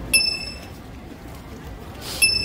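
A bright bell-like ding sound effect, struck once just after the start and ringing out for about half a second. It sits over steady low background noise.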